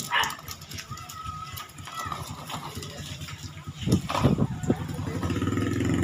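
Hard plastic wheels of a toddler's ride-on toy car rattling as it rolls over a concrete street, with a few short, loud, dog-like calls about four seconds in.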